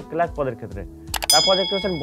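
A click followed by a bright bell-like ding from a subscribe-button animation sound effect, about a second in, ringing on for about a second over a man's speaking voice.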